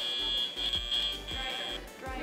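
FTC match timer's alert tone marking the end of the autonomous period: a steady high-pitched beep lasting nearly two seconds, with a brief dip partway through, over background music.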